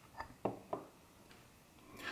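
Three light knocks and clicks in quick succession about half a second apart, the loudest in the middle, from the metal-cased handheld vector network analyzer being handled and set down on a wooden table.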